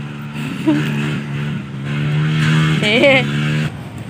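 A steady, level-pitched engine drone runs loudly, then cuts off abruptly just before the end, with brief bits of voice over it.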